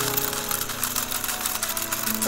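Battery-powered walking toy horse pulling a cart: a simple electronic melody plays over fast, steady clicking from its gear mechanism.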